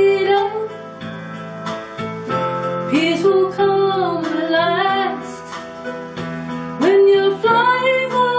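A woman singing a slow song, holding and bending long notes, over strummed guitar accompaniment.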